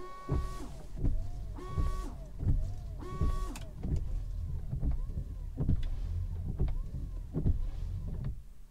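Tesla Model 3's original windshield wipers sweeping back and forth over glass wet with washer fluid. The rubber blades rub with a squeaky chirp that rises and falls on each pass. In the first few seconds the washer pump whines and sprays in three short spurts.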